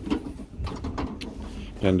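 Paddle-handle latch of an aluminum truck-body compartment door with a three-point lock being released, then a few light clicks as the door swings open.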